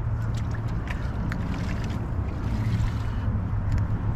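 A steady low drone with wind on the microphone, and a few faint light clicks.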